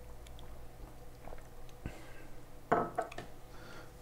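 A person sipping a drink: quiet swallowing and wet mouth sounds, with a short louder gulp or lip sound a little under three seconds in.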